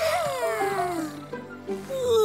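A cartoon kitten's long, sleepy yawning sigh, falling in pitch, over background music with held notes.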